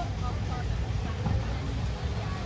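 Wind buffeting the microphone as an uneven low rumble, with faint voices of people in the background.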